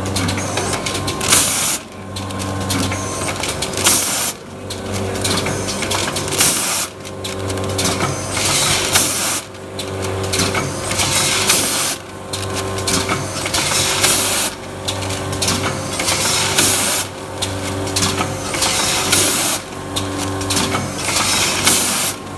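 Rotary pouch packing machine with a volumetric cup filler running: a steady low hum with a regular clatter and a sharp burst of noise about every two and a half seconds as the carousel indexes through each fill-and-seal step.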